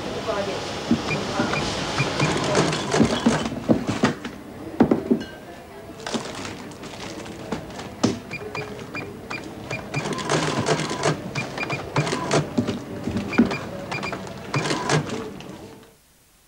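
Soundtrack of a supermarket scene: knocks and clatter of goods being handled at a checkout, runs of short high beeps, and murmuring voices over music.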